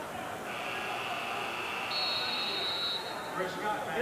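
Arena crowd noise with two long, steady high whistles. The first starts about half a second in, and a second, higher one joins it about two seconds in and outlasts it by about half a second.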